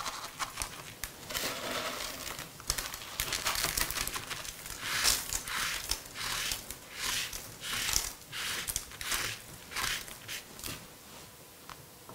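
Irregular soft rustling and crinkling as hands gather small candy sequins from a parchment-lined tray and press them onto the side of a fondant-covered cake. It grows quieter near the end.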